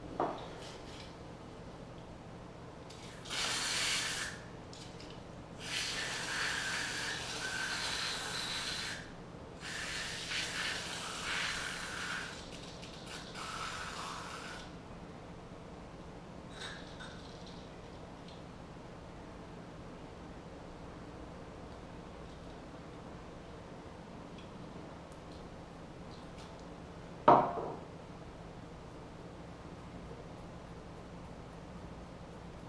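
Handling noise from a small battery-powered bait aerator pump's plastic case: several bursts of rubbing and scraping over about ten seconds, then one sharp click near the end as the battery compartment or switch is worked. The pump is not yet running.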